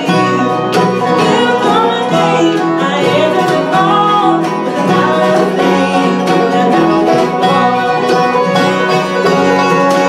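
Acoustic bluegrass band playing a song live: banjo, mandolin, fiddle, acoustic guitar and upright bass together at a steady tempo.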